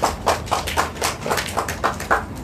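Hands clapping in a steady run of about four sharp claps a second.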